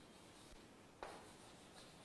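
Faint chalk writing on a blackboard, with one light tap of the chalk against the board about a second in.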